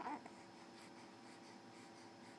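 A brief, faint baby coo at the very start, then near silence: room tone with a faint hiss.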